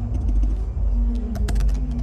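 Computer keyboard keys clicking in quick succession as a search is typed, starting about two-thirds of the way in, over a steady low rumble and hum.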